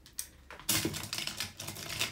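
Makeup brushes being rummaged through in a brush holder: a quick, dense run of light clicks and rustles starting a little under a second in.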